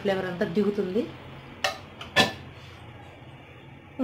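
Stainless steel lid set down on a kadai: a light click, then one metallic clank with a short ring about two seconds in.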